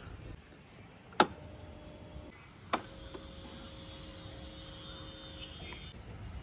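Two sharp clicks, about a second and a half apart, of a key going into and turning in a Suzuki scooter's ignition lock, followed by a faint steady tone that runs until shortly before the end.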